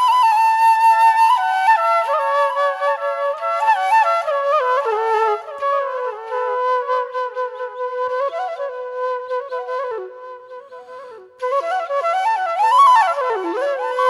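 Background music: a solo flute melody with ornamented, gliding notes, dropping away briefly about ten seconds in and then returning louder.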